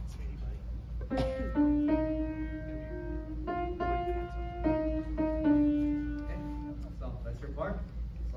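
Piano playing a slow hymn melody, one held note after another, starting about a second in and stopping near the end, with a voice briefly near the end.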